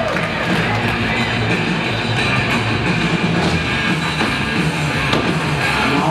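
Loud rock music with guitar.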